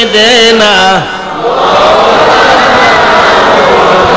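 A man sings a drawn-out devotional line in a wavering voice, breaking off about a second in; then a large congregation chants together in answer, a dense mass of many voices.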